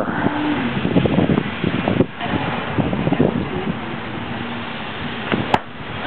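A golf driver striking a ball once near the end: a single sharp crack of clubhead on ball. It sits over a steady, noisy outdoor background.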